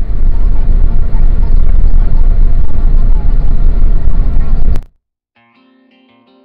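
Very loud, distorted rumble of vehicle engine and road noise picked up by a dashcam microphone inside a truck cab. It cuts off abruptly near the end.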